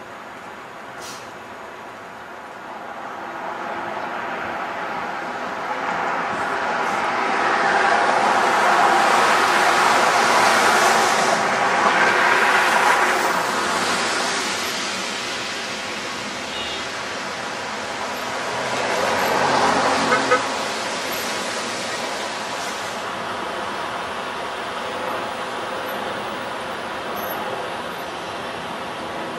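City street traffic: the noise of passing vehicles swells up, is loudest about a third of the way through, fades, and swells again briefly about two-thirds of the way in.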